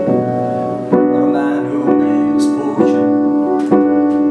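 Solo piano playing sustained chords, a new chord struck a little under once a second.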